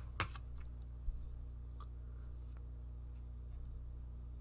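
A few light clicks and taps: a sharp one just after the start, another about a second in, then fainter ticks, over a steady low hum.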